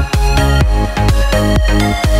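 Background electronic music with a steady beat, about two beats a second.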